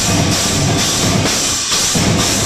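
Live metal band playing loud: a drum kit with bass drum and a regular cymbal beat driving under guitars, in one dense wall of sound.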